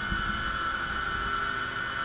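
Steady machinery hum of a membrane bioreactor wastewater treatment hall: a low rumble with a steady high whine over it.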